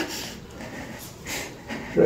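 A labouring woman's strained pushing groan trailing off at the very start, then heavy breathing with a couple of short breathy exhalations as she recovers between pushes.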